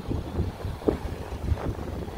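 Wind buffeting the microphone outdoors, an uneven low rumble.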